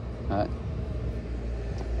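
Steady low rumble of street traffic, with a brief short vocal sound about a third of a second in.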